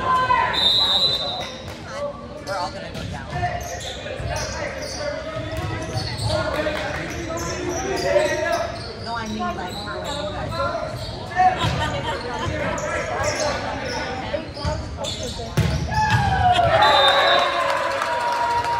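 A volleyball rally in an echoing school gym: the ball is struck with sharp slaps amid players' calls and shouts. A short, high referee's whistle sounds near the start and again near the end, followed by a louder burst of shouting as the point ends.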